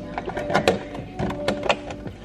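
Clear plastic clamshell salad container being handled, giving a string of sharp plastic clicks and crackles, with faint background music underneath.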